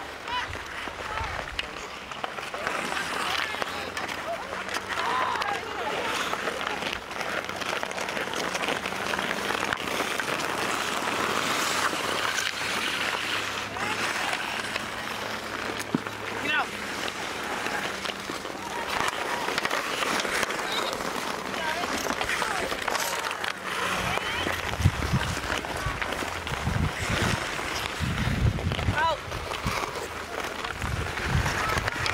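Outdoor ice hockey game: indistinct shouts and chatter of players and onlookers over skates scraping the ice, with an occasional sharp clack of a stick on the puck. From about two-thirds of the way through, wind buffets the microphone with low rumbling gusts.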